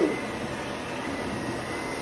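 Sebo Airbelt D4 canister vacuum running with its power head's brush roll on, pushed over medium-pile carpet to pick up sand and fur. It makes a steady rushing noise with a faint high whine.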